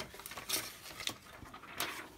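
Faint taps and rustles of a hand handling a plastic laminating pouch on a cutting mat, a few small clicks spread across the moment.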